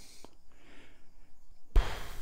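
Straight razor blade sliding in soft, faint strokes across a very wet Japanese natural whetstone (suita layer) during honing, with a brief louder noise near the end.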